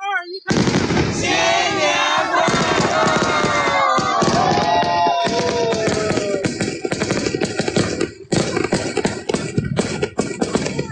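Fireworks crackling rapidly and densely, with a brief lull about eight seconds in, while a crowd's voices shout and cheer over the first half.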